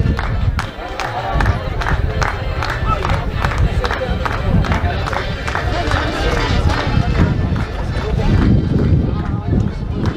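Outdoor crowd noise: many people talking at once, with low rumble from wind on the microphone and a run of sharp clicks through the first half.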